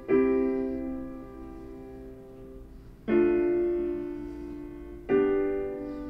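Software piano preset playing block chords: a chord struck at the start and held as it fades, then new chords about three and about five seconds in, each fading after it sounds. It is a playback preview of an AI-generated chord progression.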